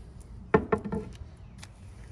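A wooden tool handle knocking as it is handled: one sharp knock about half a second in, followed quickly by three lighter knocks.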